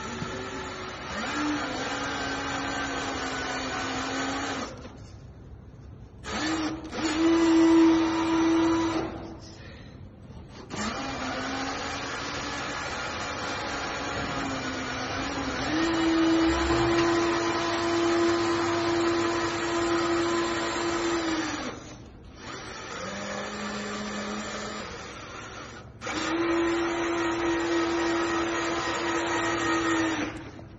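Electric drive motor and gearbox of a 1/14-scale remote-control 6x6 truck whining as it drives, the pitch stepping up and down with speed. It stops briefly several times and starts again.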